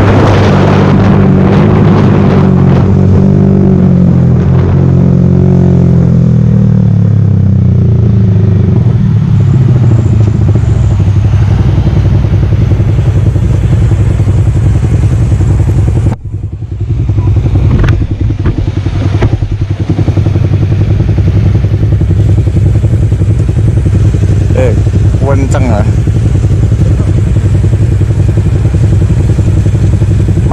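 Yamaha R15 V3 single-cylinder engine breathing through an aftermarket R9 exhaust, its note falling steadily as the bike slows off throttle, then settling into a steady idle at a standstill, with a short break in the sound about halfway through.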